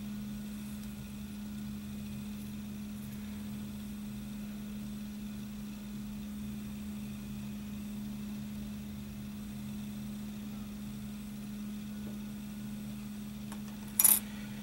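Steady low hum of room tone, with no handling sounds standing out. Right at the end comes a single sharp tap as a plastic model-kit part is set down on the table.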